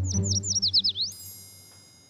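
A quick twittering run of about eight falling, bird-like chirps, then a high shimmering chime that rings out and fades, over soft low string music: a comic sound-effect cue in a drama score.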